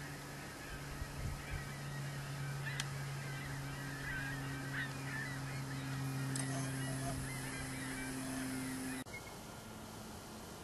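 Wild turkeys calling in a scratchy, chattering run of calls over a steady low hum. The sound drops away abruptly about nine seconds in.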